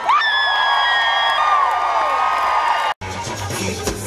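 Live rock band with a crowd cheering and whooping over a sustained held note. About three seconds in, the sound cuts off abruptly and the band returns playing, with bass and electric guitar.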